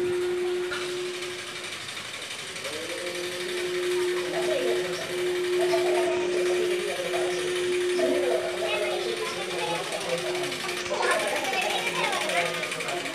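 People's voices, with a steady hum held on one pitch underneath.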